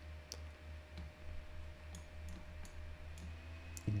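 Computer mouse buttons clicking quietly as drawing strokes are made, a handful of sharp clicks at irregular spacing over a low steady hum.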